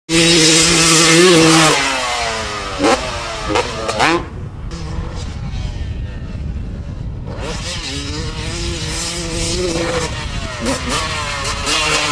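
Dirt bike engines revving at a motocross jump. A steady high engine note falls away about two seconds in, followed by three quick throttle blips. It goes quieter for about three seconds, then a steady engine note comes back and revs again near the end.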